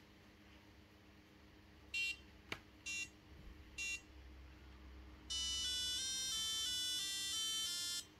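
BBC micro:bit speaker beeping three short countdown tones about a second apart, then the receiving micro:bit playing a short electronic tune of stepping notes as the ghost image arrives by radio.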